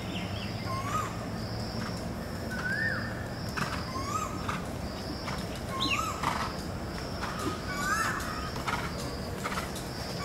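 Birds calling in the trees, short rising-and-falling chirps repeated every second or so, over a thin high steady whine and outdoor background noise. A few soft knocks come in during the second half.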